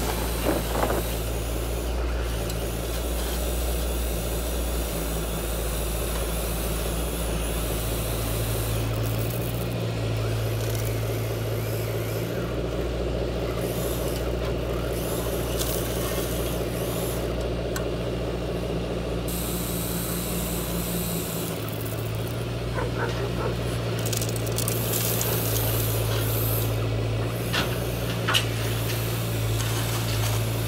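Grumalu radio-controlled Caterpillar excavator's hydraulic drive running with a steady hum that steps up and down several times as it works. Gravel clatters from the bucket right at the start, and there are a few more stone clicks near the end.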